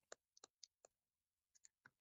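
Near silence broken by about eight faint, irregularly spaced clicks: stylus taps on a tablet screen as a word is handwritten.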